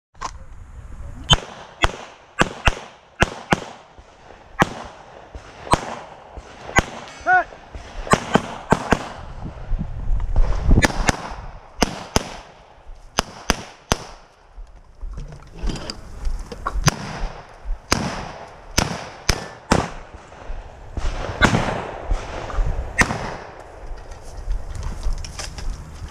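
A handgun fired repeatedly at targets: sharp shots in quick pairs and short strings, with brief pauses between them, about thirty shots in all.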